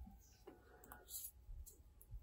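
Near silence with a few faint, short clicks of glass seed beads and fine wire being handled as the wire is pulled tight through the beads.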